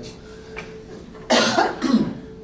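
A man coughing twice, two short coughs about half a second apart, a little over a second in.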